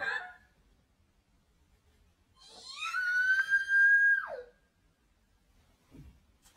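A young woman's long, high-pitched scream of fright at a bug. It rises, holds for about two seconds, then falls away sharply, after a short yelp right at the start.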